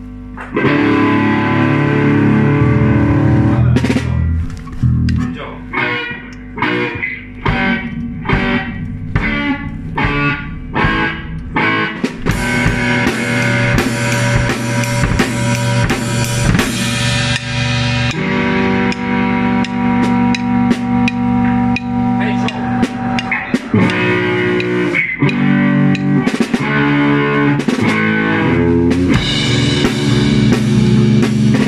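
Live rock band of electric guitar, bass guitar and drum kit starting to play about half a second in: a run of short stabbed chords for several seconds, then steady full-band playing from about twelve seconds in.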